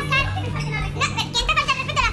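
Women's voices shouting and talking over each other in a heated argument, high-pitched and excited, over a steady music bed.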